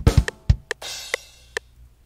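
Sampled rock drum kit in FL Studio (HQ Rock Kit) playing back a programmed beat. It opens with a quick bass-drum fill of several fast kicks, then a crash cymbal about a second in, with closed hi-hat ticks roughly every half second.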